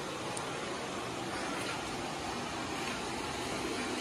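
Steady hissing background noise at an even level, with no distinct events.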